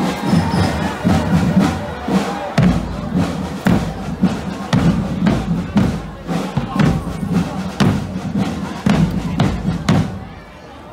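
Military cadet marching drum band playing a steady beat on bass drums and other percussion, with heavy strokes about once a second. Crowd noise runs underneath.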